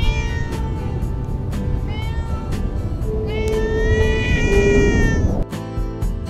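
A domestic tabby cat meowing three times over background music: two short meows and then a long drawn-out one.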